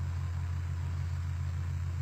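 A steady low hum with a faint, fast flutter just above it.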